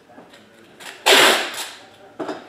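A thick trading card sliding against the other cards in hand as it is flipped over, a short swish about a second in.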